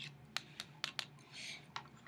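Metal spoon stirring a liquid mixture in a small plastic bowl: a few faint, separate clicks as the spoon taps the bowl.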